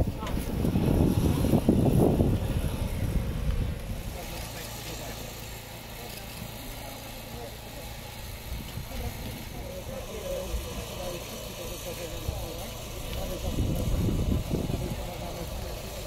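An engine running steadily at idle, under indistinct voices of the rescue crew. It is louder for the first few seconds and again near the end.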